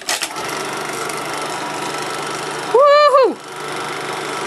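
Eiki 16 mm sound film projector switched on with a click, then its motor and film transport running steadily. A brief loud voice cuts in about three seconds in.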